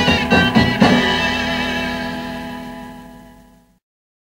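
End of a 1960s beat-band recording: a few last guitar-led strokes, then a final chord held and fading out, gone a little before four seconds in.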